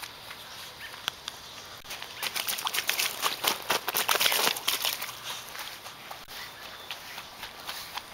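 A small child's quick, light footsteps running across grass and onto a wet plastic slip 'n slide, a dense run of slaps from about two seconds in to about five seconds in.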